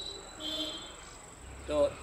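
A brief high chirp about half a second in, over a faint steady high-pitched whine, in a pause between words; a man's voice comes back near the end.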